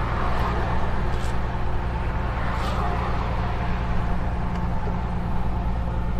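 Heavy truck's diesel engine pulling steadily up a mountain grade, a constant low drone under a haze of road and wind noise at the mirror; a car passes close alongside near the start.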